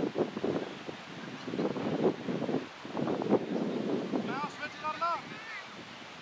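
Wind buffeting the camera microphone in gusts, with a player's voice calling out across the field near the end.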